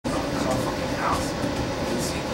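Interior running noise of a Bombardier Flexity Classic tram in motion: a steady rumble of wheels on rail and traction equipment heard from inside the passenger car.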